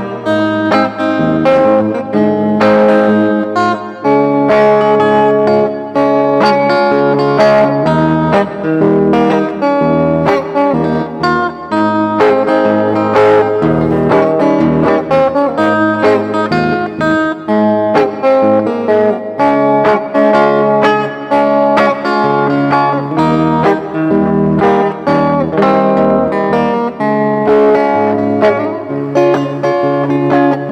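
Solo single-cutaway electric guitar played fingerstyle in an instrumental medley of old songs, with continuous plucked notes: a bass line under a higher melody.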